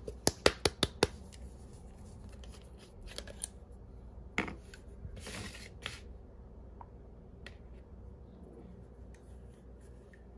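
A small plastic bottle of bright green craft paint shaken hard: a quick run of about six sharp knocks in the first second. Later come a few softer clicks and a brief rustle as paint is squeezed out onto a paper plate.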